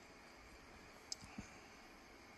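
Near silence: room tone, with two small clicks about a quarter second apart, a little past the middle.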